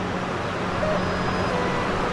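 Steady background noise with a low, even hum running under it; nothing starts, stops or changes.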